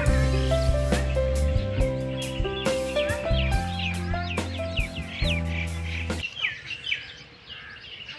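Background music with a steady beat that stops about six seconds in. Bird calls, a quick run of chirps, sound over the second half of the music and go on faintly after it ends.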